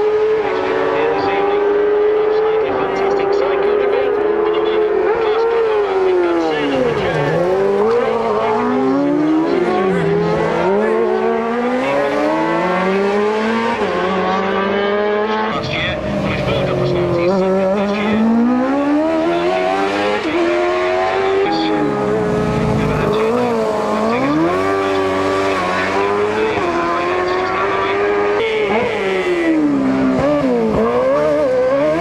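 Racing sidecar outfits at full race speed, their engines revving hard. The engine notes sweep up and down with gear changes, and drop sharply each time an outfit passes close by, several times over.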